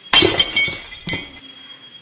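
A loud crash like glass breaking just after the start, ringing on for about a second, then a second sharp hit about a second in.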